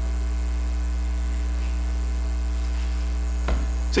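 Steady electrical mains hum with a stack of steady overtones, picked up through the microphone and sound system; a brief click near the end.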